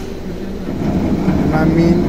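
Steady low mechanical hum, growing louder about a second in, with a man's voice starting to speak near the end.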